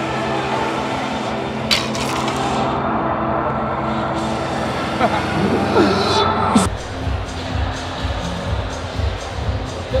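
Background electronic music: a sustained, steady track that cuts abruptly, about two-thirds of the way through, to a different track with a pulsing beat. A brief voice is heard just before the cut.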